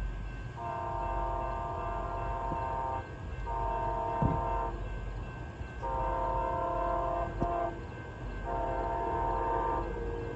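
Horn of an approaching Siemens SC-44 Charger passenger locomotive, sounding four blasts. Each blast is a held chord of several notes lasting one to two and a half seconds, the second blast the shortest. A low rumble runs underneath.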